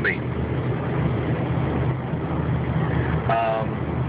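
Steady engine and road noise of a moving car heard from inside the cabin through a phone's microphone, with a brief pitched tone about three-quarters of the way through.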